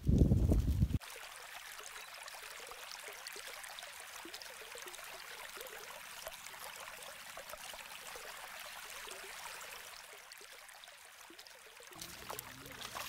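River water lapping and trickling at the shallow edge of the bank: a steady hiss with many small splashes. It opens with about a second of loud low rumble on the microphone.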